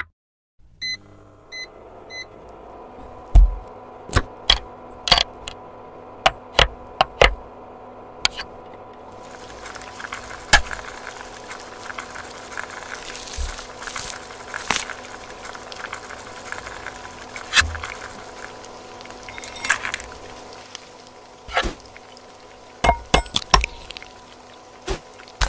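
Induction hob beeping three times as it is switched on, then a steady hum with a run of small clicks and taps as little objects are set down in a nonstick frying pan. About nine seconds in a sizzling hiss starts and carries on under further taps.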